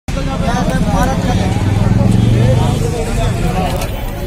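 People talking, with a vehicle engine running steadily underneath, the engine loudest about halfway through.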